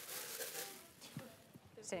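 Faint, off-microphone speech in a lecture hall, with a clearer spoken word near the end.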